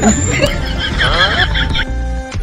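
Two men laughing loudly in high, wavering bursts over background music. The laughter stops just before the end.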